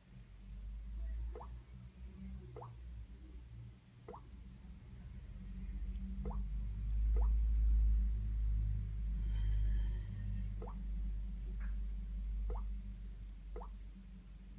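Samsung Galaxy Core Prime's touch sounds: about eight short, soft pops, one for each tap on the touchscreen as it steps through setup screens, over a low rumble that swells in the middle.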